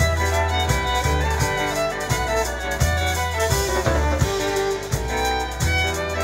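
Live Romani-style folk band playing: a violin leads over double bass notes, with acoustic guitar, accordion and a drum kit behind.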